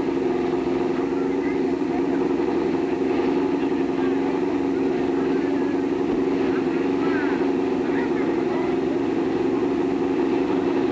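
Drag-racing motorcycle engines running steadily while staged at the starting line, a loud even drone that holds the same pitch throughout with no launch.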